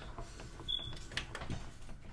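Faint scattered clicks and light knocks from a desktop PC case being handled.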